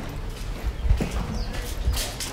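Footsteps on stone paving, a few irregular steps under a walking camera.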